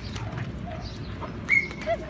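A young dog gives one brief high-pitched whine about a second and a half in, over low background noise.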